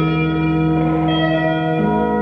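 Electric guitar played through effects: layered, long-held, bell-like tones with heavy reverb and echo, forming an ambient drone. A new low note enters shortly before the end.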